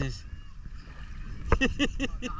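Low, steady wind and water noise from shallow sea water, broken about one and a half seconds in by a short burst of a man's voice.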